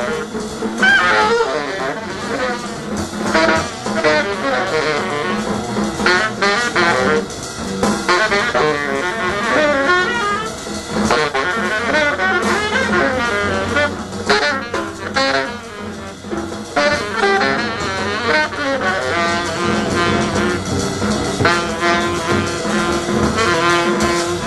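Free-improvised jazz led by a saxophone playing quick, wavering lines that twist up and down in pitch without pause.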